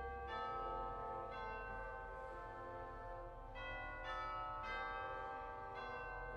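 Pipe organ playing slow, sustained chords that change every second or two, with the low pedal note dropping out about a third of a second in.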